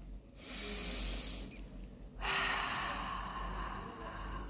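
A woman taking two slow, deep breaths through the mouth and nose as a relaxation breathing exercise: a long breath in starting about half a second in, then a longer breath out from about two seconds in.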